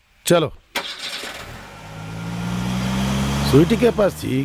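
Car engine starting with a click about three-quarters of a second in, then running and slowly rising in pitch and loudness as the car moves off.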